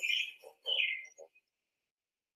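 Bird chirping in the e-book read-aloud's soundtrack: a few short chirps in the first second or so, one falling in pitch, then silence.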